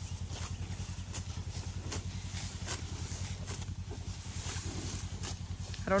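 A cow tearing off and chewing the tops of tall bromegrass at close range: irregular short tearing and crunching sounds over a steady low rumble.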